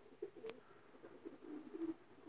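Faint cooing of domestic racing pigeons, with a single light click about half a second in.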